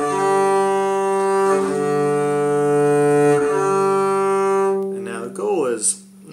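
Double bass bowed in long whole notes on the D- and G-string harmonics, the bow changing direction about a second and a half in and again past three seconds. The notes stop near the end, and a man starts talking.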